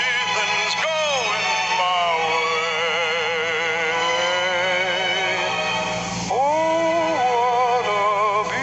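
Recorded male baritone singing a show tune with instrumental accompaniment, holding a long note with wide vibrato before a new phrase begins about six seconds in.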